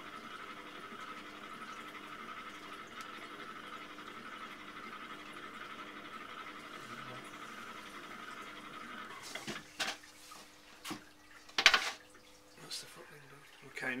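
Potter's wheel running with a steady hum and hiss. It stops about nine seconds in, followed by a few knocks and clunks, the loudest near twelve seconds.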